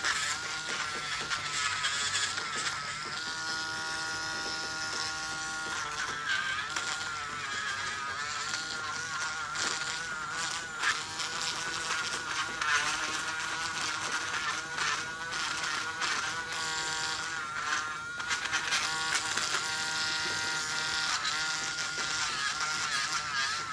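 Electric podiatry drill with a small rotary burr whining steadily as it grinds down thickened skin on the tip of a toe, its pitch wavering as the burr presses and eases off.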